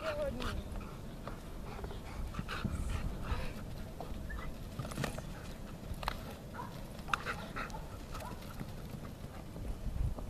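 A dog making short sounds during ball play, over a low steady rumble with scattered sharp knocks.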